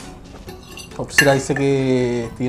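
Spoons and forks clinking on plates, then about a second in a man's voice comes in and holds one long steady note, the loudest sound here.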